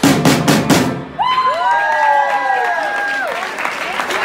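A drum kit plays a quick run of final hits that ends a live rock song about a second in, followed by several people cheering with long, overlapping 'woo' calls.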